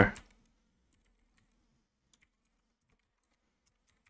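Faint typing on a computer keyboard: a string of separate, irregularly spaced keystrokes.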